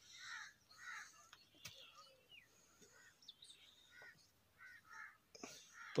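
Faint bird calls: a string of short calls repeating about every half second to a second.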